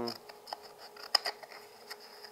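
Scissors cutting through a flattened cardboard toilet paper tube along its fold: a few sharp snips, the loudest about a second in.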